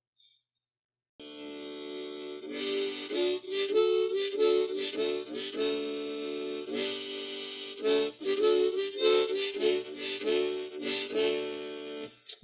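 Harmonica played in cupped hands as a song intro: after about a second of silence it starts with a quiet held chord, then plays a louder melody of chords and single notes.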